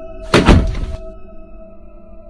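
A single heavy thud about a third of a second in, over steady background music with sustained tones.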